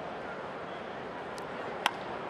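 Steady ballpark crowd murmur, then near the end a single sharp crack of a bat hitting the pitch.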